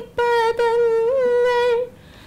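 A woman singing a prayer solo and unaccompanied. After a short breath at the start she holds one long note at a steady pitch, with a brief lift in pitch about halfway, and the note ends just before the close.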